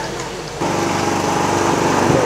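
A small engine running steadily at an even pitch, heard suddenly from about half a second in.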